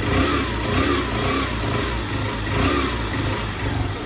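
Honda CB Shine 125's single-cylinder four-stroke engine running on choke just after a cold morning start, revved up and down in several short throttle blips. It would not start without the choke; the mechanic puts its hard cold starting down to a carburettor mixture set lean for fuel economy.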